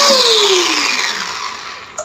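Electric motor of a Disnie 3-litre quick chopper, held in the hand without its bowl, winding down after being switched off: its whine falls steadily in pitch and fades over about a second. A brief click comes right at the end.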